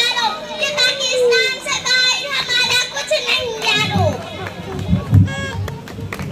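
A young girl's raised voice delivering an Urdu speech through a microphone and PA. From about two-thirds of the way in, a few low thuds and bumps of the microphone being handled break in.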